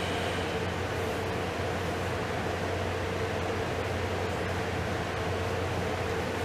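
Steady room noise: an even hiss over a constant low hum, unchanging throughout.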